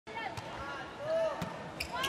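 Volleyball struck by hand: a serve hit about a third of a second in, then further sharp ball contacts around a second and a half in. Arena crowd voices underneath.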